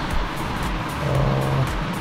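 On-board sound of a Royal Enfield Himalayan's single-cylinder engine running as the motorcycle rides a dirt trail, with wind and trail noise on the bike-mounted camera's microphone. Music plays underneath.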